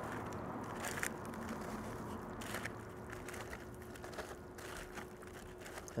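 Gloved hands tossing sauced brisket cubes in aluminium foil: soft handling of the wet meat with a few faint crinkles of the foil, about a second in and midway, over low steady background noise.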